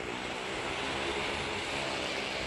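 A small car's and motorcycles' engines running steadily as they circle the vertical wall of a well-of-death pit, heard together as one even engine sound.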